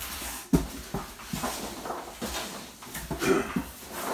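Rummaging by hand through a box of packed items: rustling of packaging with a sharp knock about half a second in and several lighter knocks after.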